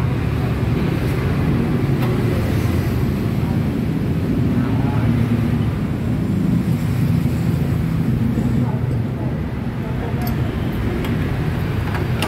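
Dongfeng S1115 single-cylinder diesel engine running steadily, a loud, unbroken low-pitched machine sound.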